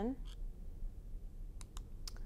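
A few faint, short clicks over quiet room tone, two of them close together about a second and a half in, as the presentation slide is advanced.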